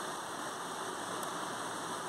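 Water of a small rocky waterfall running over rock slabs and into pools, a steady rushing.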